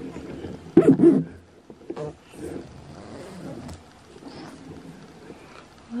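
Fleece swaddle blanket rustling and being pulled open around a baby, with a short, loud, low grunting voice about a second in.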